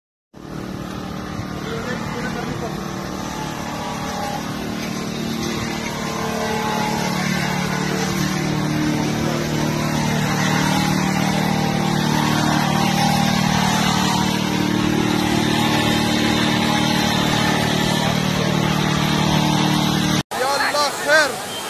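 Steady engine hum from a running vehicle under the indistinct voices of a crowd, growing slowly louder.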